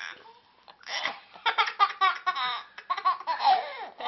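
A young girl laughing hard in quick repeated bursts, with a brief pause for breath near the start before the laughter picks up again.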